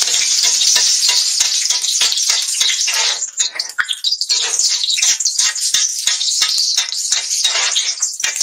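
Chicken chapli kabab patty frying in hot oil on a large flat tawa: a loud, steady sizzle full of fast crackling spits, easing briefly about halfway through.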